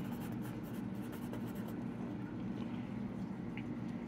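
A pen writing on a paper sticky note: light scratching strokes of the nib for the first couple of seconds, then stopping, over a steady low hum.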